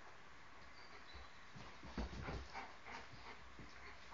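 Two wolfdogs, an adult and a pup, play-wrestling on a rug: soft scuffling and bumping of paws and bodies, with a dull thump about two seconds in.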